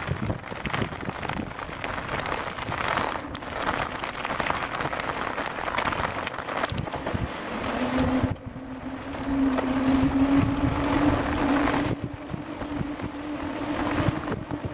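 Wind buffeting and rattling rumble picked up by a handlebar-mounted camera on a moving bicycle. About eight seconds in, a steady hum joins and rises slightly in pitch.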